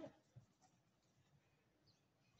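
Near silence: faint outdoor ambience with one soft tap about half a second in.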